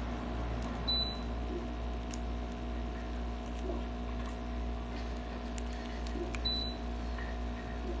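HEPA air purifier's fan running with a steady hum. The unit gives two short high beeps, about a second in and again later, as remote-control button presses register, with a few faint clicks between.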